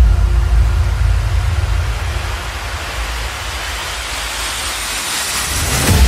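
An edited transition sound effect: a quick downward pitch swoop cuts the music off, then a loud rumbling rush of noise, with a thin whistle rising steadily in pitch, builds until it cuts off at the end.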